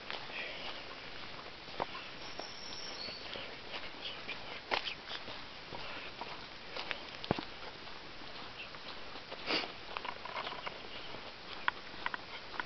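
Movement along a dirt forest trail: a continuous rustling hiss with scattered sharp clicks and knocks, a few of them louder.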